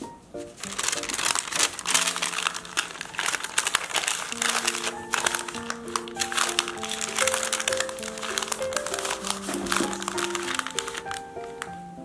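Baking paper crinkling and rustling as a log of cookie dough is rolled up in it, starting about a second in and easing off near the end, over light background music.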